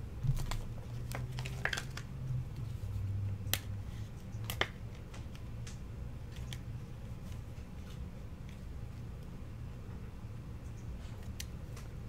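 Several light clicks and scrapes of plastic card holders and sleeves being handled in the first five seconds, over a low steady hum.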